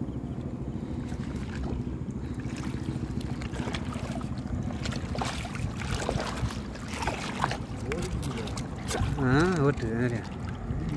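A fishing boat's engine running steadily with a low hum, with scattered knocks and rustles as the net is handled. A man's voice calls out briefly near the end.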